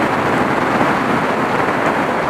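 Wind rushing over the built-in microphone of a motorcycle-mounted action camera at freeway speed: a loud, steady roar of buffeting that swamps the engine and tyre sound.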